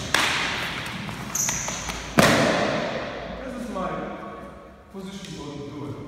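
Two sharp hits from sparring, about two seconds apart, the second the louder, each ringing on in the echo of a large hall. Voices follow.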